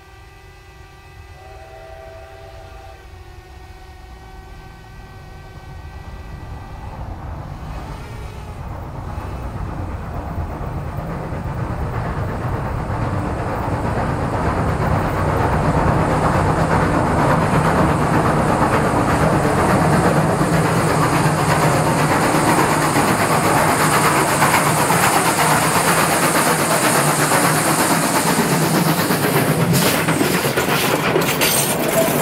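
A Baldwin Mallet narrow-gauge steam locomotive approaching through a railway tunnel. Its whistle gives steady chime-like tones over the first several seconds, then the train's running noise grows steadily louder for about ten seconds and stays loud as it nears the tunnel mouth. There are a few sharp clanks at the very end.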